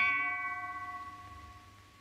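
Ringing clang of a metal frying pan brought down on a man's head, a comic film sound effect. The bell-like ring fades away over about two seconds.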